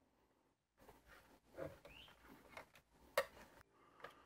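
Faint handling noise of a tight plastic wiring plug being worked off the back of a car radio unit with a trim tool: small rustles and light clicks, then one sharp click about three seconds in as the plug comes free.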